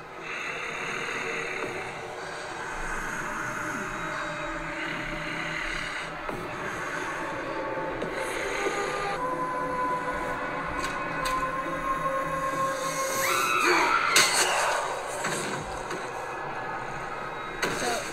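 Music from a TV drama's soundtrack, with held tones through the middle and a wavering, swooping sound about three-quarters of the way through, the loudest moment.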